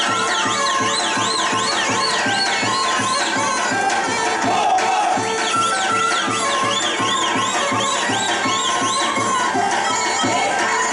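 Macedonian folk dance music: a high melody swooping up and down in quick waves over a steady beat, pausing briefly in the middle before resuming.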